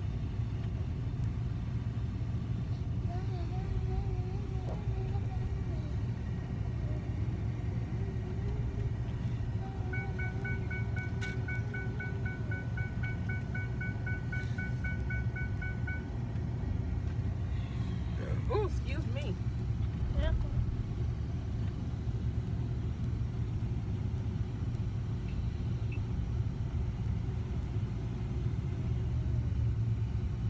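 Steady low rumble of a running car, heard from inside the cabin. From about ten to sixteen seconds in, a rapid electronic beeping on two high tones repeats several times a second.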